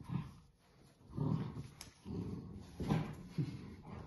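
Golden retriever puppies growling in short low bursts, four or so, as they tug at a piece of cloth between them.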